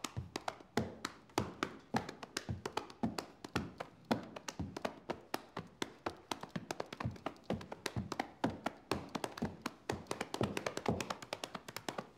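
Body percussion: hands slapping rapidly and rhythmically against the chest and thighs in a fast, unbroken hambone-style pattern of sharp strikes, several a second.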